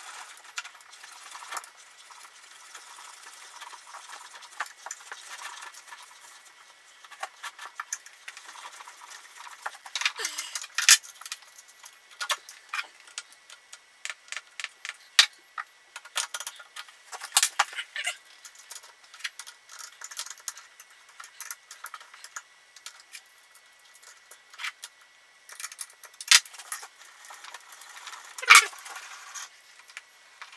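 Scattered small metallic clicks, clinks and rattles as a mini milling machine's table and small hand tools are worked by hand, with a few sharper knocks, the loudest near the end.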